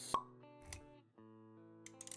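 Intro music with held notes, punctuated by a sharp pop just after the start, a soft low thud a little later, and a few quick clicks near the end.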